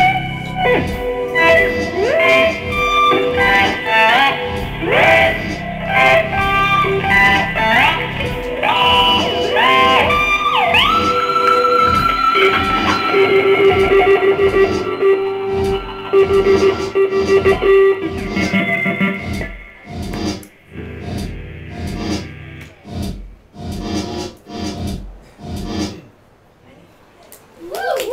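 Electric guitar played through effects, its notes often sliding upward in pitch, with some long held tones. From about three-quarters of the way in, it thins out to scattered plucks and taps at a lower level.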